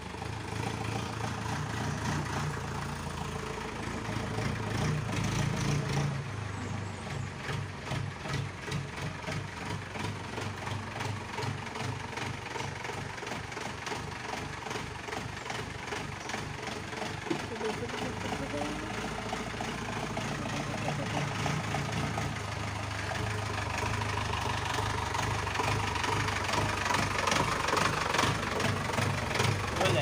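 Mahindra jeep engine running with a fast, even beat as the jeep pulls away, revving up briefly about four to six seconds in, then running steadily and growing louder toward the end as it comes closer.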